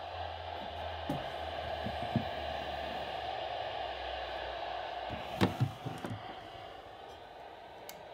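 Weather radio's speaker putting out a steady hiss of static with a low hum, the sign of a weak or lost signal, fading off over the last two seconds. A few knocks as things on the table are handled, about a second, two seconds and five and a half seconds in.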